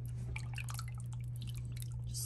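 A spoon stirring a stockpot of soupy gumbo broth with chunks of sausage and tomato, giving quick, irregular sloshing and splashing sounds, over a steady low hum.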